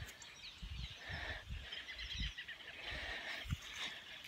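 Faint bird chirps, many short calls, over a series of low rumbling bumps on the microphone.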